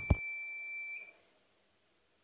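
Small electronic buzzer on an HC-SR04 ultrasonic sensor circuit sounding a steady high-pitched tone, switched on because a hand is close in front of the sensor. It cuts off about a second in as the hand is taken away.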